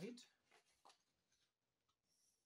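Faint rustle and a light tap of a sheet of paper being handled and slid across a desk, right after the end of a spoken word.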